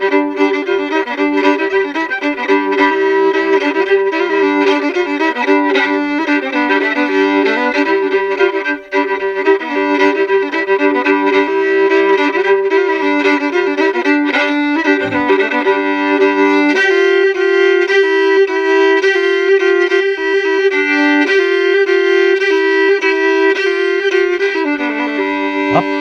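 Solo old-time fiddle, an 1700s violin cross-tuned to G-D-G-D, bowed with a steady drone of double stops under the melody. The lowest drone drops away about two-thirds of the way through.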